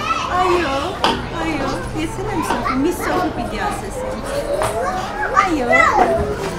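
A toddler's high voice chattering, with a woman's voice answering her.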